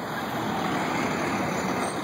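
Heavy city street traffic: a steady wash of engine and tyre noise from passing cars, trucks and buses.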